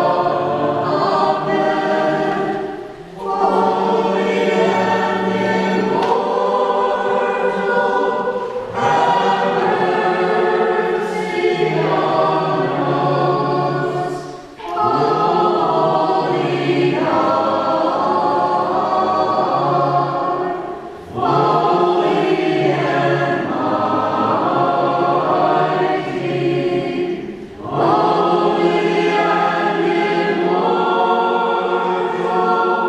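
Congregation of sisters and laypeople singing a liturgical hymn together, in sustained phrases with short breaks for breath every few seconds.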